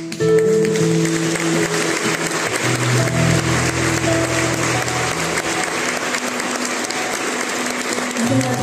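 Audience applause breaking out suddenly and continuing steadily, over the band's sustained keyboard and bass notes.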